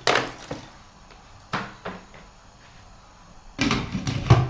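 Several short knocks and clatters of kitchenware being handled at the stove: one right at the start, a couple more over the next two seconds, and a louder cluster near the end.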